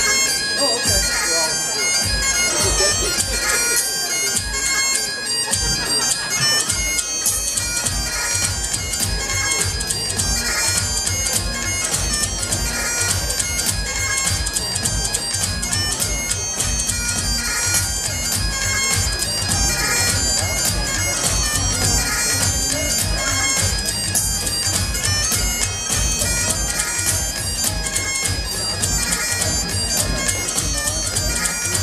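Highland bagpipes playing a hornpipe tune over their steady drones.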